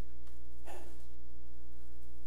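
Steady electrical mains hum, a low buzz with a ladder of evenly spaced overtones, with a faint soft noise about two-thirds of a second in.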